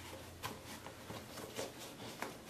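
Faint rustling of cotton fabric bonded to stiff non-woven interfacing, handled and pushed through to turn a corner right side out, with a few soft crackles.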